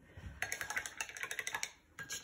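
A rapid run of light clicks, over a dozen in about a second, starting about half a second in.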